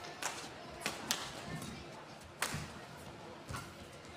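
Badminton rally: a few sharp cracks of rackets striking the shuttlecock at uneven intervals, with the loudest a little past halfway, over the low background of a large arena.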